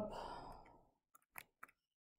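A man's soft breathy exhale, like a sigh, trailing off after his last word, then three faint clicks about a quarter second apart.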